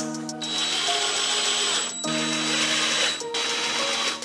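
Cordless drill driving screws into a truck's door sill trim. It runs with a high whine twice, for about a second and a half and then for about a second, over background music.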